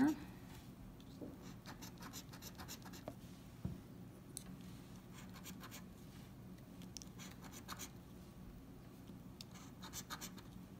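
A coin scratching the coating off a lottery scratch-off ticket in short runs of quick strokes, with pauses between runs. A single light knock comes a little before halfway.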